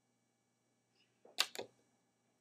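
Near silence, then two quick soft clicks close together about a second and a half in.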